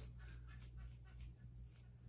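A wide-tooth comb raked through a synthetic afro wig in faint, repeated strokes, a few a second, to fluff the curls out.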